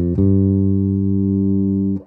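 Human Base Roxy B5 five-string electric bass played through its Glockenklang preamp with the mid control flat. A quick note or two, then one long held note that rings steadily and is cut off at the end.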